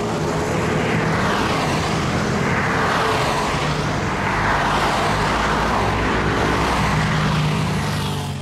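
Cars passing one after another on a highway, a steady rush of tyre and engine noise that swells and eases with each pass, fading out near the end.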